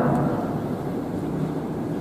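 Steady low background rumble and room noise on the microphone during a short pause in speech.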